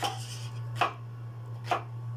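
Kitchen knife chopping tomatoes, three sharp cuts a little under a second apart, over a steady low hum.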